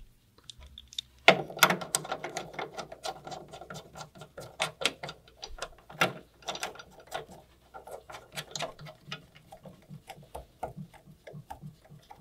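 Metal parts of a MIG welder's wire-feed drive being handled: the wire guide plate is set back into place and its screws are turned finger tight. A sharp knock about a second in, then a run of irregular small metallic clicks and taps.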